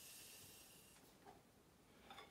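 Near silence: faint room tone, with a soft high hiss that fades out about a second in.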